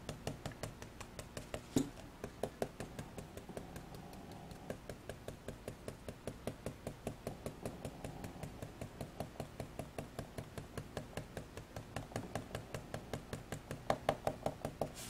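Ink dauber being tapped rapidly and evenly onto glossy cardstock to stipple in shading. It makes a steady run of light taps, about four or five a second.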